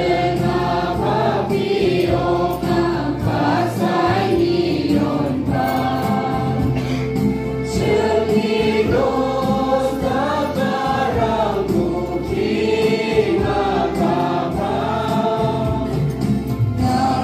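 A choir singing a hymn with musical accompaniment, the singing continuous and loud throughout.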